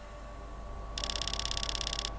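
Rapid train of high electronic ticks, about twenty a second, starting halfway in and lasting about a second: a computer text-printing sound effect as characters appear on a monitor screen. Under it runs a low, steady hum.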